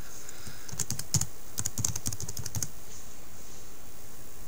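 Computer keyboard being typed on: a quick run of keystrokes tapping out a single word, starting about a second in and stopping before the three-second mark.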